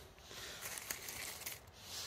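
Faint rustling and a few light crackles of rotting bark and leaf litter being handled, over a steady faint hiss of road traffic.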